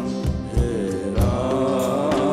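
A man singing a slow, held melodic line that bends in pitch, over instrumental accompaniment with regular drum strokes.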